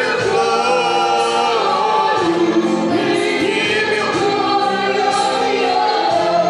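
A man singing a gospel worship song unaccompanied, holding each note for about a second and gliding between them.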